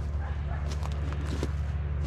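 An engine idling steadily: a low, even hum with a few faint clicks over it.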